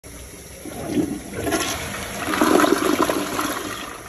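Toilet flushing: water rushes into the bowl about half a second in and swirls a handful of ping pong balls down the drain, then tapers off near the end.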